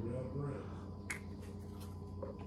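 A faint voice in the first half second, then a single sharp click about a second in, with a few lighter ticks after it.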